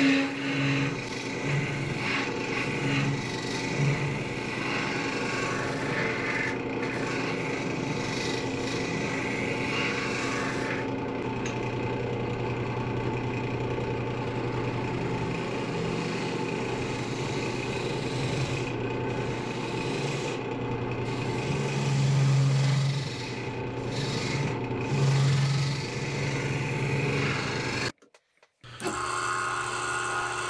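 Wood lathe spinning a thin-walled maple lamp shade while a gouge cuts the inside, a steady scraping of tool on wood over a low hum. The sound cuts out briefly near the end.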